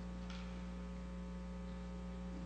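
Steady electrical mains hum with many evenly spaced overtones, picked up by the chamber's microphone sound feed during a pause in speech.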